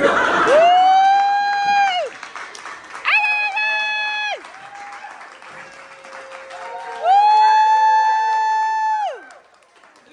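Improvised song: a singer holds three long high sung notes, each one to two seconds, with the pitch sliding in at the start and out at the end. Audience applause sounds underneath.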